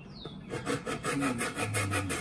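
Thin-bladed hand saw cutting a protruding wood insert strip off the edge of a walnut board, in quick short strokes about six a second, starting about half a second in.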